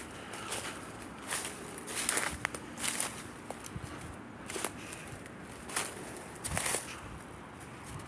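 Hurried footsteps through dry leaf litter and underbrush on a forest floor, each step a short rustling crunch, coming irregularly about once a second.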